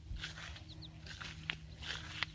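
Footsteps of someone walking along a field path, soft regular steps about twice a second, over a faint steady low hum. A couple of faint short high chirps come a little past halfway.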